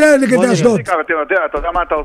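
Men talking. A full-sounding studio voice gives way about a second in to a caller's voice over a telephone line, which sounds thin and narrow.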